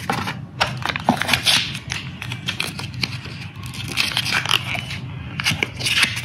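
Paper and plastic packaging rustling and crinkling in the hand as a GoPro battery is pulled from its moulded case compartment by its paper tab: a run of quick scratchy rustles and small clicks.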